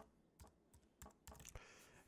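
Faint typing on a computer keyboard: a run of quick, irregularly spaced keystrokes as a short word is typed.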